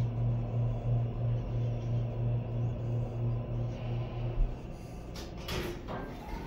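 2007 Schindler HT 330A hydraulic elevator car travelling up with a low hum, which fades out about four seconds in as the car stops. A sharp click follows, then the sliding car doors rumble open near the end.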